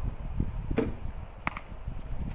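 Recurve bow being shot: the bowstring is released and the arrow loosed, heard as two sharp clicks about three-quarters of a second apart, the second one with a brief ring.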